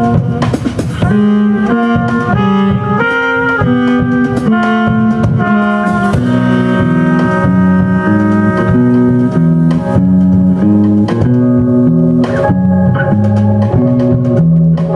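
A live jazz band playing: trumpet and saxophone lines over electric bass guitar, electric keyboard and drum kit. The horn melody is busiest in the first half, with the bass and keyboard notes moving underneath.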